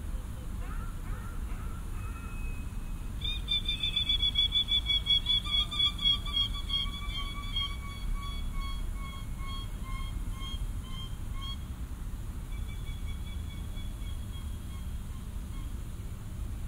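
A human voice imitating a bird call, played back from portable speakers: a rapid run of short, high, evenly pitched notes, about four a second, starting a few seconds in and fading over several seconds, then a fainter run near the end. A steady low rumble lies underneath.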